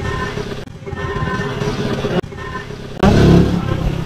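A small engine running steadily, with abrupt changes in the sound and a louder low rumble in the last second.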